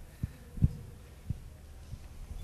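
Three dull, low thumps at uneven intervals over a faint steady room hum.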